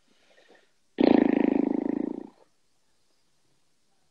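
A man's voice making a loud, rough growling groan, about a second and a half long, starting abruptly about a second in.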